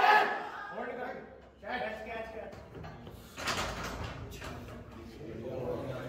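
Men's voices talking and calling out in a large gym hall, with a heavy clunk about three and a half seconds in as the loaded barbell is set back into the squat rack.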